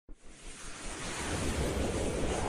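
Logo-intro sound effect: a rushing whoosh of noise with a low rumble underneath, swelling in loudness from silence.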